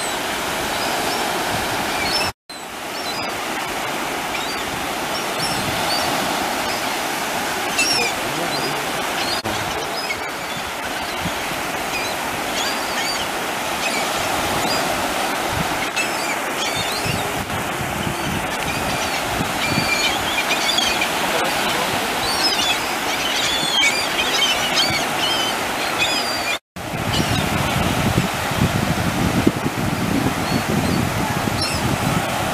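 Sea waves and surf washing steadily, with gulls giving many short, high cries over them, thickest in the last third. The sound drops out twice for an instant, once early and once near the end.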